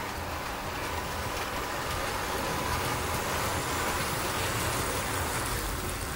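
Two Piko class 189 model electric locomotives hauling a heavy train of loaded freight wagons along the track: a steady rumble of motors and wheels rolling on the rails, a little louder in the middle as the train comes close.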